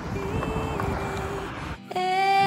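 Mazda 2 hatchback driving away across a gravel lot, a low rumble of engine and tyres with wind on the microphone, under faint music. Clearer music comes in right at the end.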